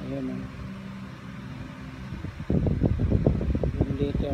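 A person's voice holding one low, drawn-out hum or vowel for about two seconds, then a louder low rumbling noise for the last second and a half.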